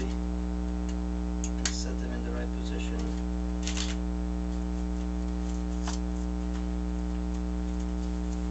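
Steady electrical mains hum, with a few brief scratches and ticks as a utility knife blade pries up paper stiffeners inside a camera bellows.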